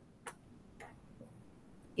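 Two faint short clicks, one about a quarter second in and a weaker one just before the one-second mark, over quiet room tone.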